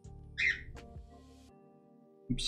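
Background music with held notes over a soft low beat, and a short high-pitched burst about half a second in.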